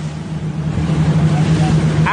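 Speedboat engine running steadily at speed, with water rushing against the hull.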